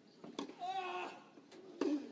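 Tennis ball struck by rackets twice in a rally on a clay court, the shots about a second and a half apart, the first followed by a player's drawn-out grunt.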